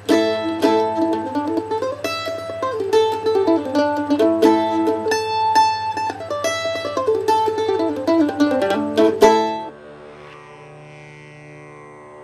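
Collings mandolin picked in a bluesy modal A, a quick run of single notes and double stops against open top strings. About nine seconds in the playing ends on one sharp stroke, and the strings ring on quietly, fading.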